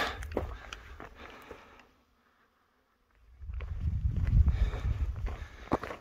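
Wind rumbling on the microphone with footsteps on a rocky trail, dropping out to dead silence for about a second and a half in the middle before returning louder.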